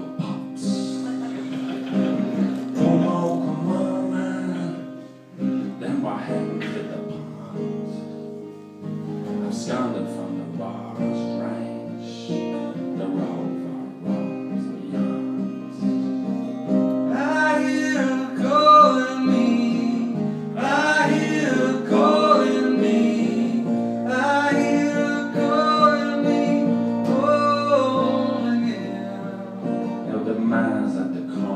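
Acoustic guitar strummed and picked in a steady accompaniment, with a voice singing over it from a little past halfway.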